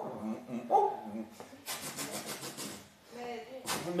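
A man's voice in brief, low utterances, with about a second of quickly pulsing hiss in the middle.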